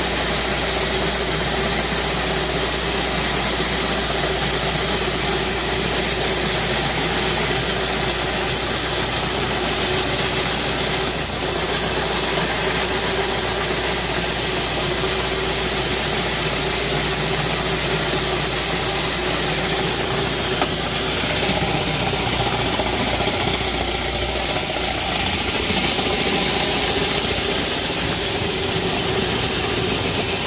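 Rotary pressure-washer surface cleaner running over a concrete pad: a steady hiss of high-pressure water jets spinning under the hood, with a steady mechanical hum beneath it.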